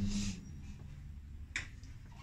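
Handling noise as a rubber gas hose is worked at the side of a gas fan heater's metal casing: a short rustle at the start, then a single sharp click about one and a half seconds in, over a low steady hum.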